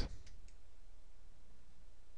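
A computer mouse button clicking faintly, once right at the start and again softly about half a second in, over a steady low hum.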